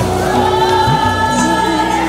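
Music: several voices singing together in long held, slowly gliding notes over a low, steady instrumental accompaniment.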